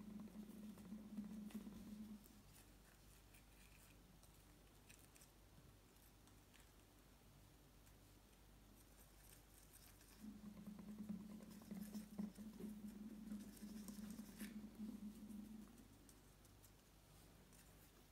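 Faint light scratching and tapping of a wooden toothpick working baking powder through a small plastic funnel into a balloon, with a low steady hum that fades out about two seconds in and returns from about ten to sixteen seconds.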